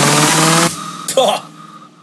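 Hardstyle dance music that cuts off suddenly under a second in. The break that follows holds a faint held note and a single spoken 'Oh'.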